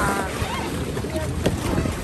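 A steady rush of wind over the microphone and the sea around a small boat, with one sharp knock about one and a half seconds in.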